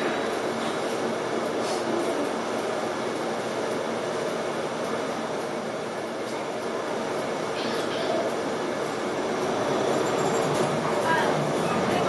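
Cabin noise of a King Long KLQ6116G city bus under way: steady engine and road noise, growing a little louder in the last couple of seconds.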